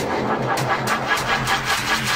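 Electronic dance music: a build-up of fast, evenly spaced percussive ticks over a pulsing, buzzy low synth line.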